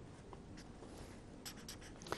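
Faint marker pen strokes on paper, a few short scratches that grow busier near the end.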